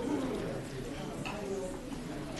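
Indistinct murmur of several people talking at once in a room, with no one voice standing out.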